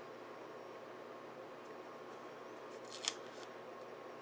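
Faint room tone with a short rustle of paper about three seconds in, from hands handling and lining up a planner sticker on a paper insert.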